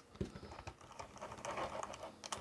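Faint, scattered small clicks and light knocks as a composite caster gauge is handled and taken off an RC touring car's front upright, with a sharper click just after the start.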